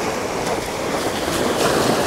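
Penn Slammer 4500 spinning reel being cranked on a steady retrieve, a continuous whir of gears and line, over wind and small waves lapping at the shore.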